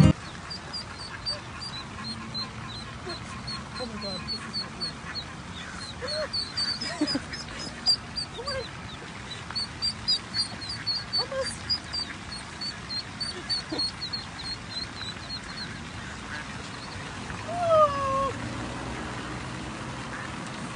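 Ducklings peeping: a long run of rapid, high, short chirps, many overlapping, that stops about three-quarters of the way through, with a few lower calls among them and a louder falling call near the end.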